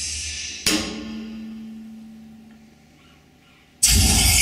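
Electroacoustic music for amplified cello and electronic sound: a sharp percussive hit about two-thirds of a second in, its noisy tail and a low held tone fading away over the next two seconds, then a sudden loud noisy burst just before the end.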